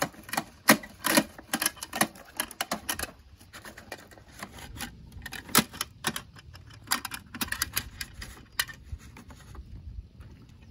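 Hard plastic clicking and rattling from a toy MAN garbage truck's side-loader arm being worked by hand: irregular sharp clicks, in quick runs at the start and again from about five and a half to eight and a half seconds in.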